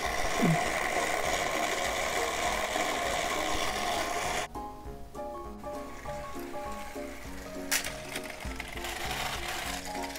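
Battery-powered TrackMaster toy train motor whirring steadily, cutting off suddenly about four and a half seconds in. Upbeat background music follows, with one sharp click partway through.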